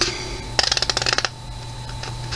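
A short, rapid rasp of a hand rubbing against the paper pages of a paperback book as it is held open, starting about half a second in and lasting under a second.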